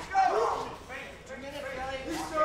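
Short shouted voice calls over a low arena background. A loud call with a bending pitch comes about a quarter second in, then falls away, and weaker calls follow about a second in.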